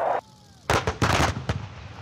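Towed howitzers firing: several sharp, loud blasts in quick succession starting about two-thirds of a second in, then fading out.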